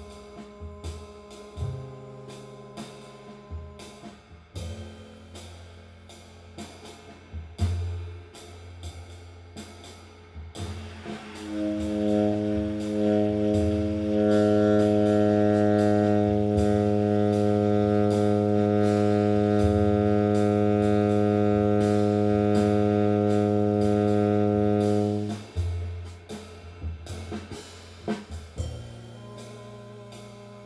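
Swing bass-and-drum play-along: drums keeping a swing rhythm while the bass plays roots that change every few seconds. About eleven seconds in, a tenor saxophone enters on one of its lowest notes as a long tone, held at a steady pitch for about fourteen seconds. It grows brighter a few seconds in, then stops, and the bass and drums carry on.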